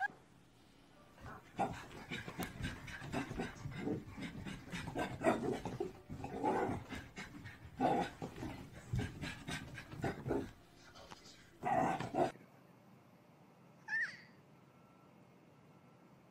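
Small dog panting and scuffling in rough play, with a few short pitched yelps or cries mixed in. About twelve seconds in it cuts off abruptly to a quiet background with one brief chirp.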